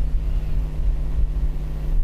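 A steady low hum with a rumble underneath, continuing through a pause in the talk.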